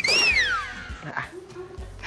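A comic sound effect: a high, whistling tone that glides up, peaks and falls away within the first second, over background music.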